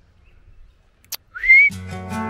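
One short, loud rising whistle, a person whistling to call a dog, just after a sharp click. Guitar background music comes in near the end.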